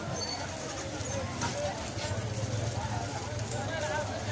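Busy outdoor market bustle: many distant voices of shoppers and vendors talking at once, with scattered small clicks and knocks. A low steady rumble in the background grows stronger about halfway through.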